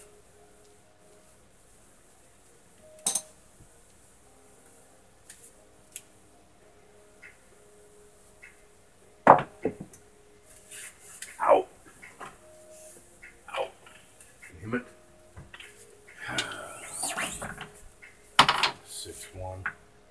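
Casino dice and chips clicking and clacking on a felt craps table: scattered sharp clicks as the dice are set by hand, a louder clatter a little before halfway as a throw strikes the table and back wall, and a denser run of clicks in the second half as the dice and chips are gathered.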